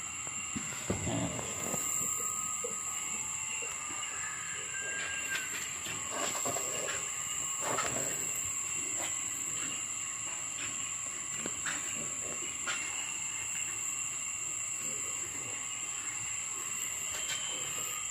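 Steady outdoor background hiss with a high, unbroken insect drone, and a few faint brief sounds coming and going.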